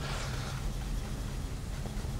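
Chef's knife chopping parsley on a plastic cutting board: a few soft, sparse taps of the blade against the board over a steady hiss.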